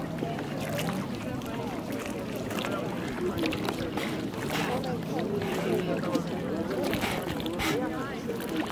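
Indistinct voices of people talking in the background, over the small lapping of lake water at the shore.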